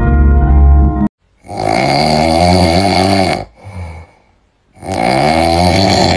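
A short run of music cuts off about a second in, followed by two long, raspy wailing sounds from a voice, each about two seconds long with its pitch sagging downward, with a short quiet gap between them.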